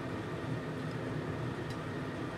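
Quiet, steady room tone: an even background hiss with a faint low hum and no distinct events.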